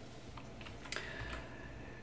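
A few faint clicks of computer keys, the clearest about a second in, as the next slide is brought up.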